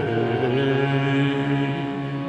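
Sikh kirtan music: harmoniums hold a steady chord as a wavering sung line settles into a sustained note.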